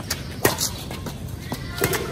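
Badminton rackets striking a shuttlecock during a rally: sharp, short hits, the loudest about half a second in and another near the end.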